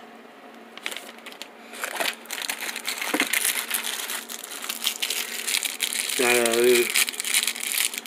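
Thin clear plastic packaging bag crinkling as it is handled, a dense crackle that starts about two seconds in and goes on to the end.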